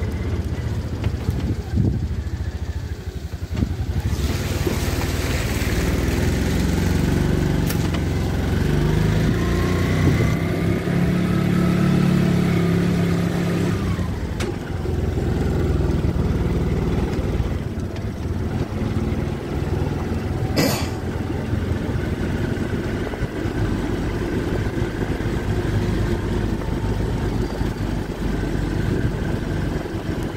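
A vehicle engine running as it travels, its pitch rising and falling in the middle stretch as it speeds up and eases off. There is a single sharp click about 21 seconds in.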